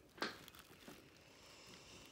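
Near silence with room hiss, broken by one short click about a quarter of a second in.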